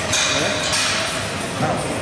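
Busy gym ambience: voices and background music, with a short hiss in the first moment.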